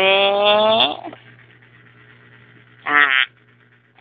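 A voice holding one long, slightly rising vowel for about a second, then a short 'uh' about three seconds in.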